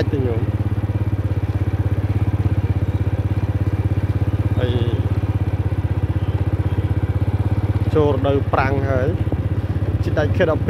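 Motorcycle engine running steadily with a fast, even beat while riding along a dirt track.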